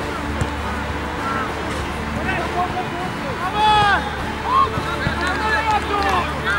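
Players shouting and calling to each other during a football match, several voices at once. The loudest is one strong shout about three and a half seconds in.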